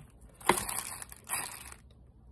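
Clear plastic bags and paper envelopes rustling and crinkling as they are handled, in two short bursts about half a second and just over a second in.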